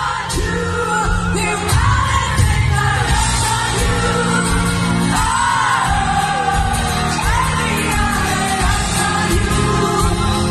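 Live pop-rock band playing loudly, with a female lead singer's voice over electric guitar, bass and drums, heard from among the audience.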